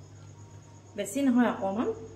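A woman's voice speaking briefly, starting about a second in. Underneath, a faint steady high-pitched pulsing trill and a low hum.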